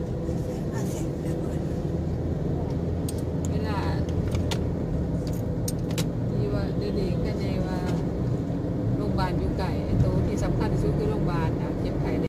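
Car driving at road speed, heard from inside the cabin: a steady low rumble of engine and tyre noise. A few short chirping sounds and light clicks come and go over it.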